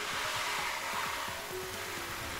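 Arena show soundtrack: a rushing, whooshing noise that swells and slowly fades over faint sustained music tones.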